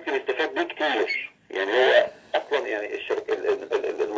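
Speech only: a man talking continuously in Arabic, heard with the thin quality of a telephone line played over a speakerphone.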